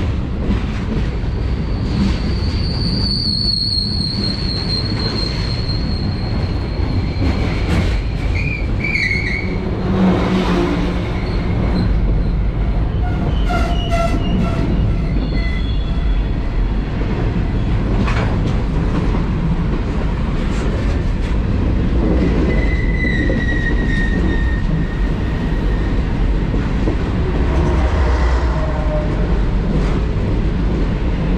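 A freight train of hopper cars rumbling and clattering past close alongside on the next track, heard from a moving passenger train. Steel wheels squeal high several times: a long squeal about two seconds in, and shorter ones around nine and twenty-three seconds.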